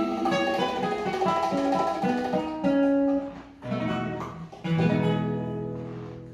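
Acoustic guitars playing the closing phrase of a bolero: a quick run of plucked notes, a brief break, then a final chord that rings and fades away.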